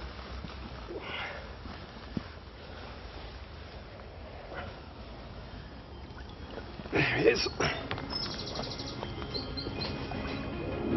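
Birds chirping over a quiet outdoor background, with a rapid high trill and a few short chirps near the end. A brief louder burst of sound comes about seven seconds in.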